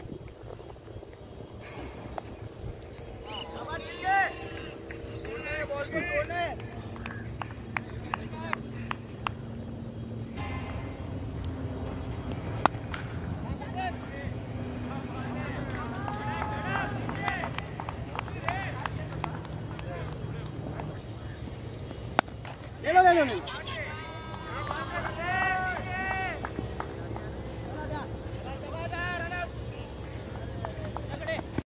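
Cricket players calling and shouting to each other across the field, in short scattered bursts, with one loud call falling in pitch about two-thirds of the way through. A steady low hum and scattered sharp clicks run underneath.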